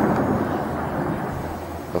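Low rumble of a shelling explosion rolling and echoing, fading away steadily.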